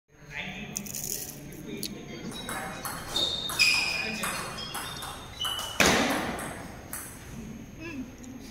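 Table tennis rally: the ball clicking off bats and table about twice a second, some hits with a short ringing ping. A louder, longer burst comes about six seconds in, and the rally stops.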